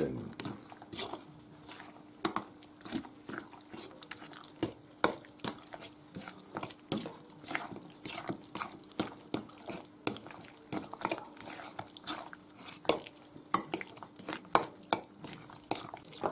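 A metal utensil stirring a wet tuna and beaten-egg mixture in a glass bowl, tapping and clinking irregularly against the glass about once or twice a second.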